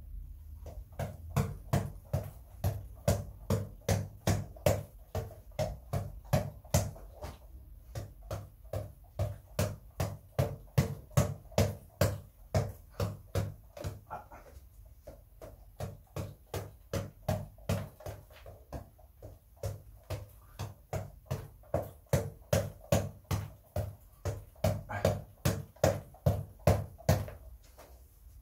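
Headband boxing reflex ball on an elastic cord being punched again and again: a quick, even run of thuds at about two to three a second, pausing briefly a few times.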